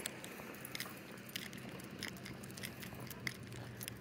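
Faint scattered clicks and clinks from a dog's leash clip and collar hardware as the dog walks on pavement, over a low steady hum.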